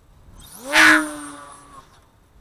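Electric RC plane's motor and propeller passing low and close: a whine that rises quickly in pitch, is briefly very loud just under a second in, then holds steady and fades away.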